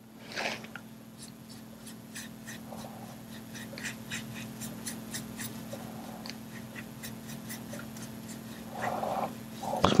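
Small paintbrush dabbing and stroking acrylic paint on paper: faint, irregular scratchy clicks a few times a second over a steady low hum.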